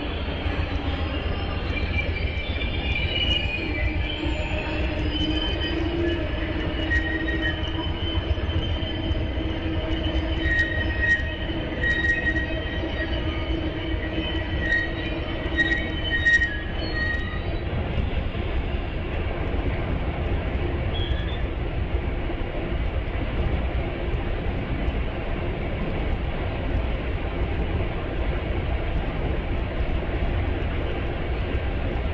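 Trains standing and creeping at a station: a steady low diesel rumble throughout, with thin, high steel-wheel squeals and scattered clicks during roughly the first half that die away a little past halfway.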